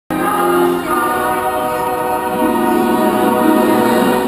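Choral music from a show soundtrack over outdoor loudspeakers: a choir holding sustained chords, moving to a new chord just under a second in and again about two and a half seconds in.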